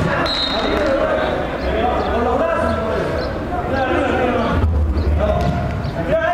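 Players calling and shouting to each other during an indoor five-a-side football game, with thuds of the ball being kicked.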